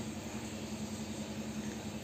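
Aquarium air pump humming steadily, with a faint even hiss.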